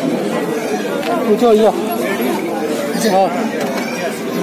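Several people talking over one another in Hindi, a loose chatter of voices with no single clear speaker.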